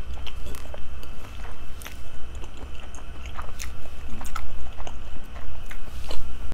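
Close-miked mouth sounds of someone chewing a big bite of kielbasa sausage: irregular wet clicks and smacks several times a second.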